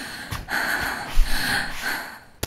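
A person breathing hard, several quick noisy breaths in a row, with a brief low thump about a second in.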